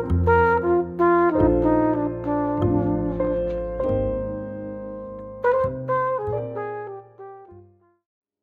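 Jazz ballad instrumental passage: a brass horn plays the melody over piano and double bass. Near the end it plays a short run of falling notes, and the music fades out just before the end.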